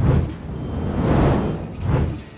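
Edited transition sound effect: a low thud, then a whoosh that swells to a peak just past the middle and dies away into a second low thud near the end.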